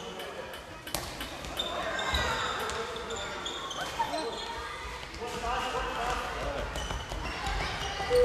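Handball match play in a sports hall: the ball bouncing and slapping on the wooden floor, with sharp knocks about a second in and again about four seconds in. Shoes squeak briefly and players call out, all echoing in the large hall.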